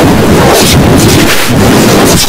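Very loud, heavily distorted noise that fills the whole range from deep rumble to high hiss, with no clear pitch: an audio track overdriven to clipping by editing effects.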